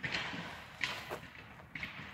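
A person blowing a breathy puff of air through a small bubble wand to blow bubbles; the puff fades over about half a second, and a second short puff comes about a second in.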